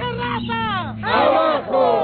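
Women protesters shouting loudly in a crowd, angry yells that fall in pitch, the loudest and longest beginning about a second in.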